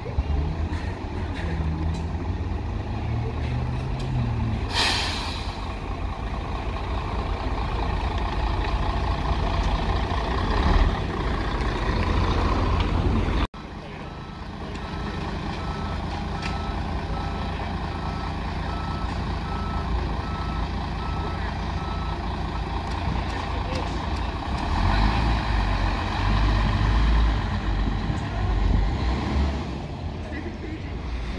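Articulated single-deck bus's diesel engine running as it pulls away and turns, with a short loud hiss of air from the brakes about five seconds in. About halfway through, a run of regular warning beeps sounds for several seconds over the engine.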